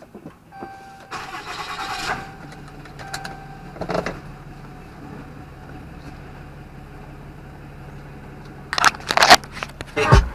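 A Ram 2500's 6.7 L Cummins inline-six turbodiesel is cranked and starts about a second in, then settles into a steady idle. Near the end come loud knocks and rubbing from the camera being handled.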